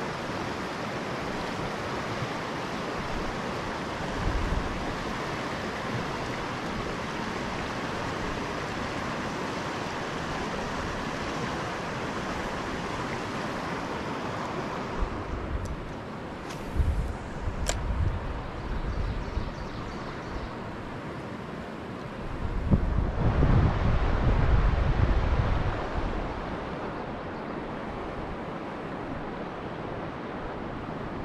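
Steady rushing of river water running over a shallow rocky riffle. Gusts of wind buffet the microphone with low rumbles a few times, loudest in a long gust about three-quarters of the way through.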